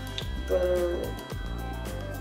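Background music with a steady beat and a deep, sustained bass line, with a brief hummed voice about half a second in.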